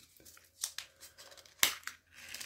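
Small plastic bag of screws being handled and opened: faint rustling and crinkling, with one short, louder crinkle or tear about one and a half seconds in.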